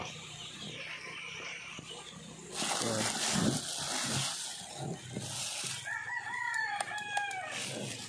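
Thin plastic bag crinkling and rustling as a corded electric drill is pulled out of it, loudest a few seconds in. Near the end a rooster crows once, a single long call.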